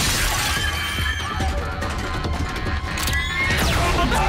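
Cartoon sound effect of a wall shattering into pieces, with a low rumble of falling debris, over background music. A rising whoosh comes near the end.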